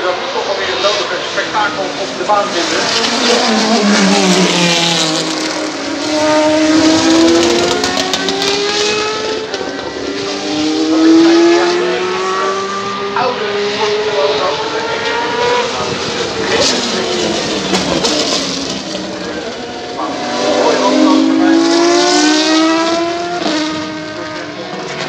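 BOSS GP single-seater race cars passing the grandstand one after another at speed, engines revving high with the pitch sweeping up and down as each car goes by; the loudest pass comes about eleven seconds in.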